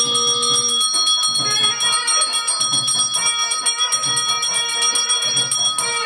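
Bells ringing rapidly and continuously during a lamp-waving aarti, mixed with music and a low beat about once a second.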